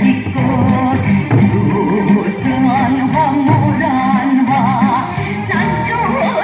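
A song with singing in wide vibrato over a steady beat, with Korean barrel drums (buk) struck by sticks along with it.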